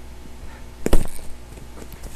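An elbow strike landing once on a cushioned bar-stool seat used as a striking pad: a single sharp thump about a second in.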